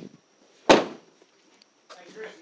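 A vehicle door slammed shut once, a single loud slam less than a second in.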